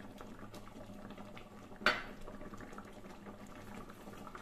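Thick milk-and-millet kheer simmering in a kadhai, with faint, steady bubbling. A single sharp tap comes about two seconds in.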